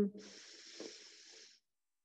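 A woman's deep breath in from the belly: a soft, even, breathy hiss lasting about a second and a half, then it stops.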